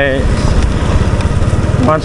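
Small motorcycle engine running steadily under way, with a constant low hum.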